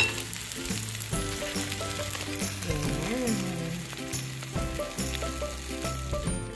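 Tortang talong (egg-coated eggplant omelette with ground beef) sizzling steadily as it fries in oil in a nonstick pan, with background music underneath.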